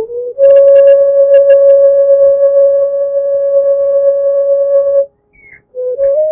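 Film background music: one high note held steady for about four and a half seconds, with a few quick light strikes soon after it starts. It stops about five seconds in, and a wavering note takes up the music near the end.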